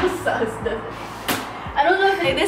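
Short vocal sounds and laughter from young women, with two sharp slap-like hits: one right at the start and a louder one a little past halfway.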